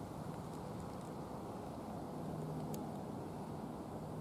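Quiet background ambience: a steady low rumble with a faint, wavering hum and a couple of soft ticks.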